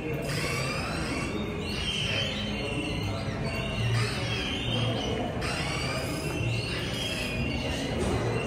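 Analog electronic sound sculpture making synthesized bird trills and cricket chirps, its circuits built from op-amps and flip-flops: many short chirps sweeping up and down in pitch, overlapping throughout, over a low background rumble.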